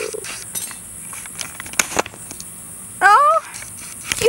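A few sharp clicks in the first half, then a short vocal exclamation with rising pitch about three seconds in, over a steady high hiss.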